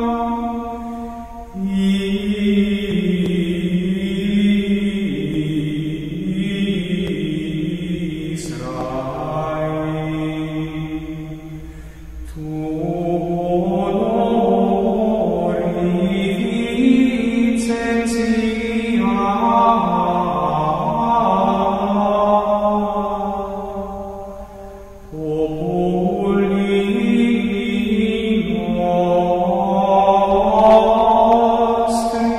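Slow devotional chant sung in long held notes that step between pitches, in phrases of about ten to thirteen seconds with short pauses between them.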